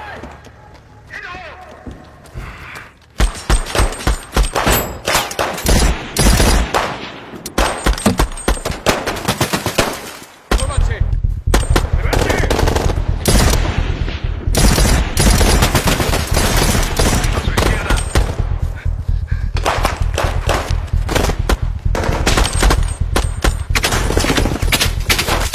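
Gunfight with rapid bursts of automatic rifle fire starting about three seconds in, becoming almost continuous over a deep low rumble from about ten seconds in.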